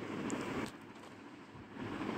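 Faint, steady background noise with no distinct event; it drops away for about a second in the middle, then returns.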